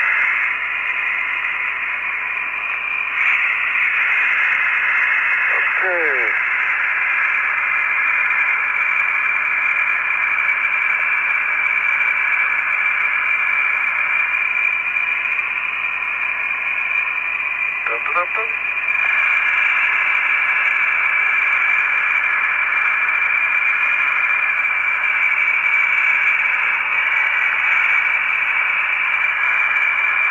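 Steady, narrow-band radio hiss of the Apollo air-to-ground voice link, thin and tinny, broken twice by brief garbled snatches of voice, about six seconds in and again near eighteen seconds.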